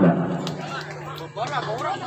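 Spectators chattering and calling out at an outdoor ball game, with a steady low hum underneath and a few sharp clicks.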